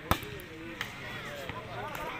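A volleyball being served by hand: a sharp slap of palm on ball just after the start, then a weaker knock just under a second in, over spectators chattering.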